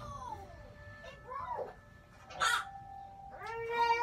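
A baby whimpering with short wavering cries, then breaking into a long, loud wail a little before the end. A brief hissing burst comes in the middle, over faint background music.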